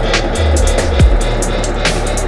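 Dub track with a deep bass line, a few kick-drum strikes and ticking hi-hats.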